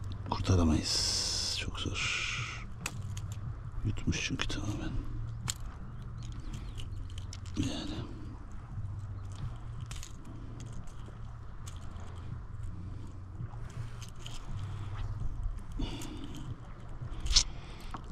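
Scattered small clicks, scrapes and rustles of hands and tools working two hooks out of a fish's mouth, with a brief hiss about a second in and a low steady hum underneath.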